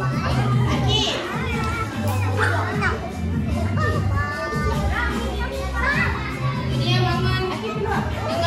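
A children's action song playing, with a bass line of held notes under a sung melody, and young children's voices singing and calling along with it.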